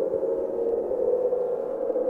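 A steady ambient drone of many held tones clustered in the middle range, with no attack or break, swelling slightly in places.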